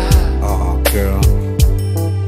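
Instrumental intro of a slow R&B soul ballad: a drum beat of deep, falling kick-drum thumps and sharp snare hits over held chords, before any vocals come in.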